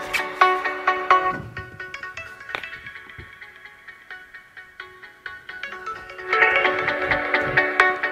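Electronic dance music playing from an unmodded OnePlus 6's single bottom-firing speaker, heard through a lavalier mic held close to it. About a second and a half in, the music drops away to faint as the mic is held at the top earpiece, which gives no sound without the stereo mod. It comes back loud about six seconds in, with a few low bumps from the mic being handled.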